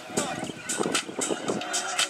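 A Spanish-language pop song: a singing voice over a beat with sharp percussion hits.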